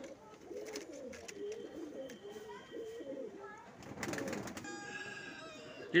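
Saharanpuri pigeons cooing: a run of low, soft, repeated coos, with a brief rustling noise about four seconds in.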